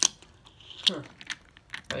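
Sharp plastic clicks and taps of a small plastic toy train engine being handled and set down on a plastic toy track piece, the loudest click right at the start, with a brief voiced "huh" about a second in.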